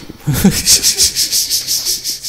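Fast, even rubbing or scratching strokes, about eight a second, with a brief low sound near the start.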